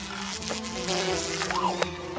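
Cartoon sound effect of a housefly buzzing steadily, with a few sharp clicks and a short rising-and-falling squeak near the end.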